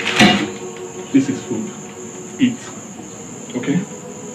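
Crickets chirring steadily at a high pitch, with a loud, sudden noise just at the start and a few short, softer sounds spread through the rest.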